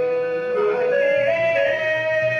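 Stage-drama music: a melody sung in long held notes with small ornamental turns, stepping upward in pitch, over keyboard accompaniment.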